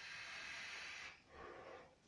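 Faint breathing close to the microphone: a long breath drawn in for about a second, then a shorter, lower breath out.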